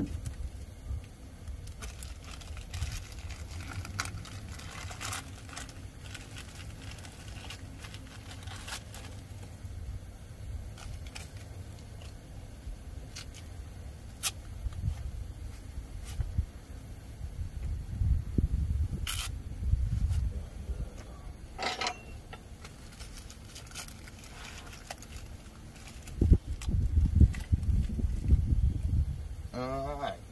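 Hand work on engine wiring: scattered sharp clicks and rustling from gloved hands handling plastic electrical connectors. There are bursts of low rumble around the middle and again near the end.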